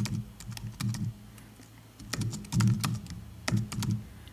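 Typing on a computer keyboard: short runs of keystrokes with brief pauses between them.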